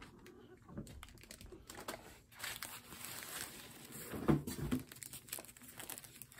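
Soft foam packing wrap crinkling and rustling as it is pulled off a crossbow scope. A brief voice-like sound comes about four seconds in.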